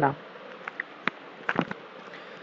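Faint steady hiss of recording background noise, with a few short, soft clicks about a second in and again near the middle of the gap.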